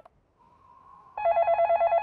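Cartoon telephone ringing at the other end of the line after a number is dialled: a faint tone, then an even electronic trilling ring from just over a second in.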